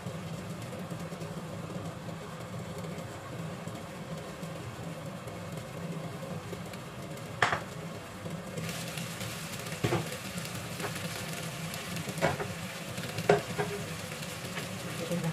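Cod steaks frying in oil in a covered pan, a steady sizzle. A little past the middle the lid comes off and the sizzle turns brighter, with a few sharp clinks of lid and utensils against the pan.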